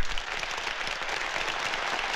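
A large audience applauding steadily, many hands clapping at once.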